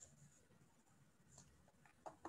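Near silence: faint room tone from an open microphone, with two faint ticks, one at the start and one about a second and a half in.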